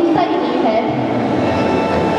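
A woman's voice speaking into a microphone, amplified over a public-address system, with a steady low rumble underneath.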